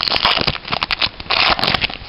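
Foil booster pack wrapper crinkling and crackling in the hands as it is opened, in two busy stretches, one at the start and one just past the middle, then stopping at the end.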